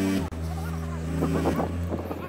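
A steady low drone, with people's voices talking in the background. Louder sustained low tones break off abruptly just after the start.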